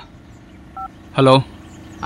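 A single short two-tone keypad beep from a Samsung mobile phone during a call, about a second in, over a faint steady hum.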